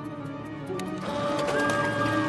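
Background music with a photocopier running over it. The sound grows fuller and louder about a second in.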